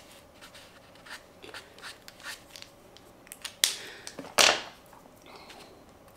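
Acrylic paint marker tip dabbing and scraping on sketchbook paper in short, irregular, scratchy strokes, with two louder sharp sounds a little past halfway.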